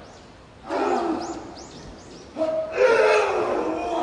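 A man yelling loudly in a pro wrestling ring, twice: a short yell about a second in and a longer, drawn-out one from about halfway.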